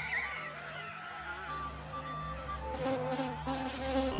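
A huge animal-bone warning horn blown too weakly: instead of a blast it gives only a faint, thin buzzing note, the sign that the blower lacks the breath to sound the alarm.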